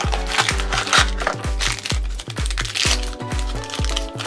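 Foil blind-box wrapper crinkling as it is torn open and peeled back by hand, over background music with a steady beat.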